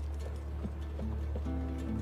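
Faint horse hooves clip-clopping over a low steady hum, with a held musical chord coming in about one and a half seconds in.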